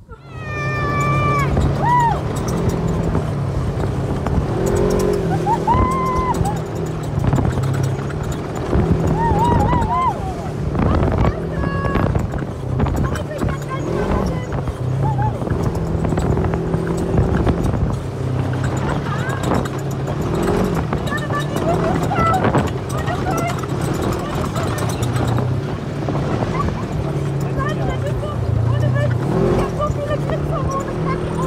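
Polaris RZR side-by-side's engine running as it drives off-road, its pitch stepping up and down with the throttle, with occasional voice sounds from the riders over it.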